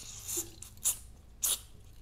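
Aerosol brake-parts cleaner hissing out of the can onto a rubber brake master cylinder diaphragm to flush off old brake fluid: a spray that ends just after the start, then three short squirts about half a second apart.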